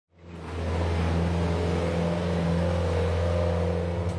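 A steady low mechanical hum with an even hiss over it, fading in over the first half second.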